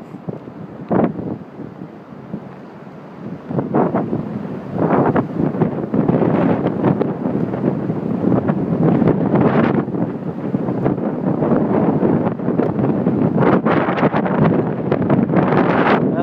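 Strong wind buffeting the phone's microphone in gusts, lighter for the first few seconds, then loud and sustained from about five seconds in.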